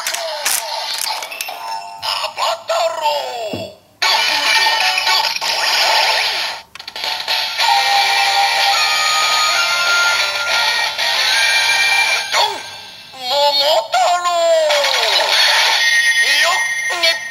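DX Zangura Sword toy's electronic speaker playing its Don Momotaro Avataro Gear audio, a recorded call-out voice and fanfare-style music, triggered by the inserted gear. A gliding voice call comes in the first few seconds, then about eight seconds of music, then more voice calls near the end.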